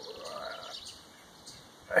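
A pause in a man's talk with faint bird chirps in the background; he starts speaking again at the very end.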